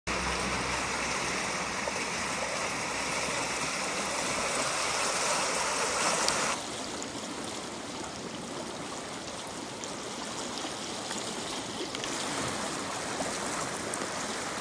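Floodwater of a swollen river rushing steadily. The sound drops abruptly in level about halfway through and rises slightly again near the end.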